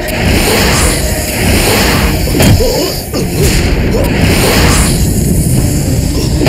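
Dramatic TV fight sound effects: loud whooshes and a heavy impact about two and a half seconds in, over background music.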